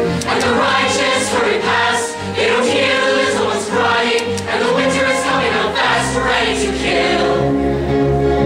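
A musical-theatre ensemble sings in chorus with instrumental accompaniment. A new low accompaniment note enters about six seconds in.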